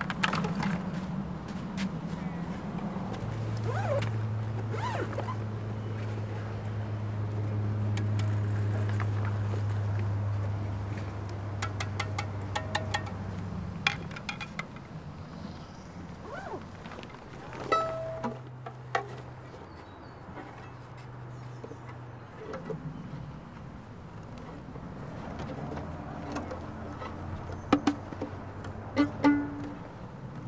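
Sparse string music: long, low held bowed notes through the first half, then a few short plucked and bowed notes, with scattered sharp clicks and knocks among them.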